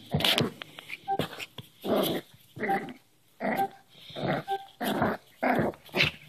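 Cairn terrier puppy giving a string of short play growls, about eight in six seconds, while wrestling with a person's hand.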